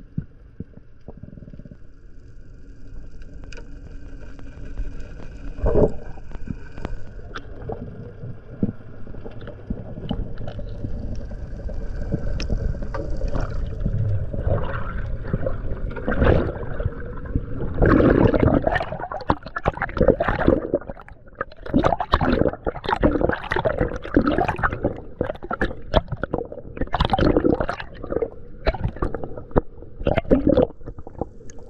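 Water heard through an underwater camera on a spearfishing dive. A low muffled rumble of moving water, with a faint steady whine through the first half, gives way past the middle to dense, irregular splashing and bubbling as the diver swims at the surface.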